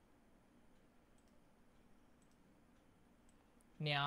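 A few faint, isolated computer mouse clicks, spaced irregularly over a quiet room background.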